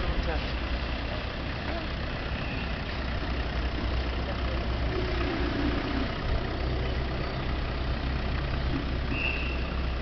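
Steady low rumble of a vehicle engine idling, with street noise over it. A short laugh comes at the start.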